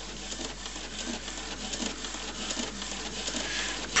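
HP Photosmart C4485 inkjet all-in-one printing: the print-head carriage shuttles across the page with a steady patter of fine, rapid clicks.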